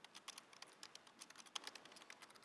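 Computer keyboard typing: a quick, faint run of key clicks.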